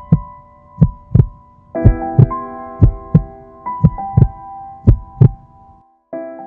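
Heartbeat sound effect, a double thump about once a second, over sustained keyboard chords in the film's score. Both cut off suddenly just before the end.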